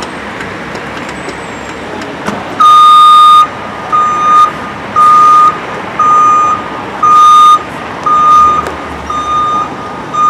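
Truck backup alarm, most likely on a flatbed tow truck, beeping loudly about once a second from about two and a half seconds in, over steady vehicle noise.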